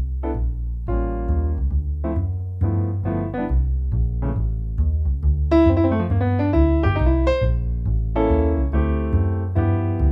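Kawai MP11 digital stage piano played by hand: a bass line changing about once a second under chords, with a busier run of higher notes from about halfway through.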